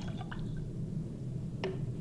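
Rinse water dripping and splashing faintly as a plastic hamster water bottle is lifted out of a basin, then a single sharp knock near the end as the bottle is set down on the table.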